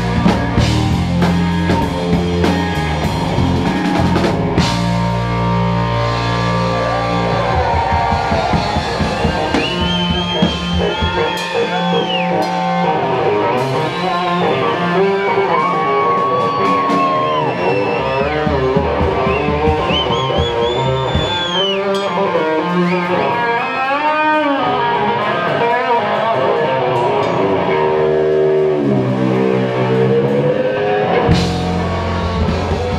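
Live rock band playing an instrumental passage: a Stratocaster-style electric guitar solo with sustained, bent notes over a drum kit. The deepest bass thins out about a third of the way in.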